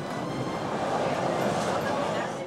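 Steady running noise inside a passenger railway carriage on the move: an even rumble and hiss.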